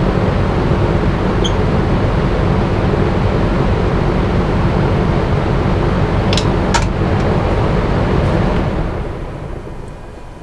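Small wood lathe running steadily while a turning tool works the spinning spoon blank, with a couple of sharp clicks a little past the middle. Near the end the lathe is switched off and winds down.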